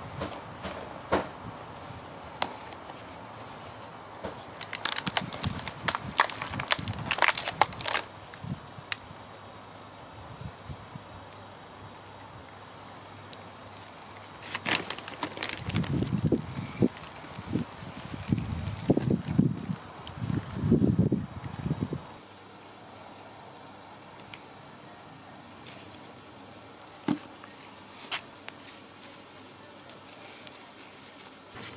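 Hands firming potting compost around a cyclamen in a plastic planter: scattered crackles, clicks and rustles of soil and of the pot being handled. A few seconds of low rumbling come about halfway through, and the last third is quieter.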